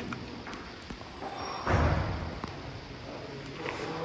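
Quiet indoor ambience of a large church, with a muffled low thump or murmur about two seconds in and a few faint clicks and taps.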